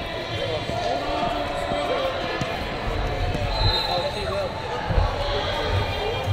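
Busy gym ambience of a wrestling meet: many overlapping voices talking and calling around the mats, with dull thumps of bodies hitting the wrestling mats. The loudest thump comes about five seconds in.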